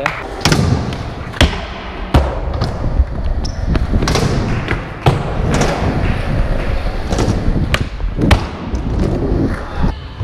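Skateboard wheels rolling on a concrete floor with a steady low rumble, broken by about nine sharp knocks and thuds at irregular spacing as boards hit the ground.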